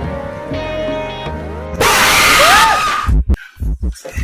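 Soft, calm music with sustained tones, broken about two seconds in by a sudden loud jumpscare scream lasting about a second: the K-fee commercial's zombie shriek. Choppy low bursts of sound follow.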